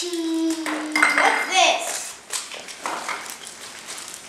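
A child's voice holding one note through the first second or so, then light rustling and clicks of toys and wrappers being handled.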